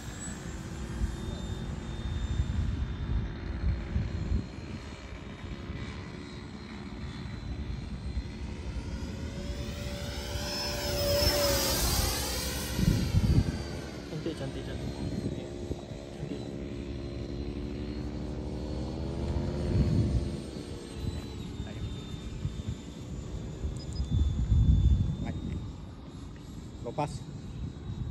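The 80mm electric ducted fan of a Freewing T-33 Shooting Star RC jet whines as the model flies overhead. The sound swells during a pass about ten to thirteen seconds in, its pitch sweeping up and then down, and swells again briefly later on.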